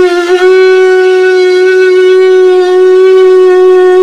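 A Hindu ritual conch (shankh) blown in one long, loud, steady note. The note wavers briefly about a quarter of a second in and then holds.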